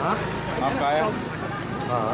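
A man talking on a street, with a vehicle engine running underneath.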